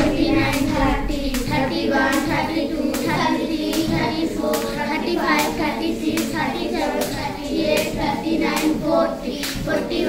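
Sharp rhythmic slaps about twice a second, in time with a rope being skipped, under a group of children's voices chanting and cheering.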